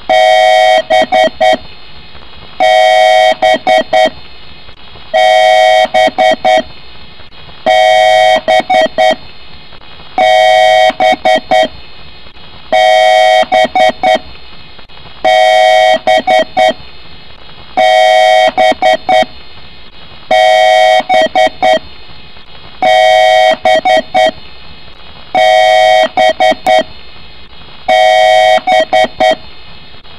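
Loud electronic beeping in a repeating pattern: one long steady beep followed by several short ones, the whole group coming round about every two and a half seconds.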